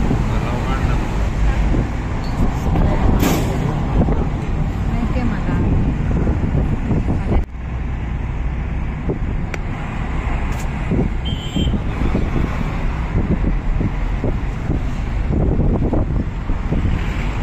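Road and engine noise of a moving car heard from inside, a steady low rumble with tyre and wind hiss. A short high beep comes about eleven seconds in.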